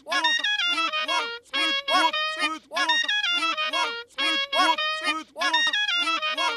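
Cartoon clarinet playing: a short phrase of quick notes that bend up and down in pitch, looped so that it repeats identically about every second and a half.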